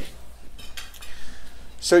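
Cutlery clinking lightly against plates and dishes as diners eat, a few scattered clinks.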